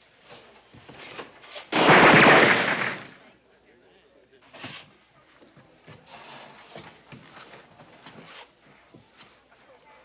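A loud burst of gunfire about two seconds in, lasting over a second, followed by scattered fainter knocks and scuffing.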